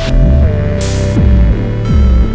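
Electronic music played entirely on a Korg Monologue analogue synthesizer: held synth notes with pitch glides over deep bass, with synthesized drums. Two downward-sweeping drum hits land about a second in and just before the end, and noisy hits come at the start and near the middle.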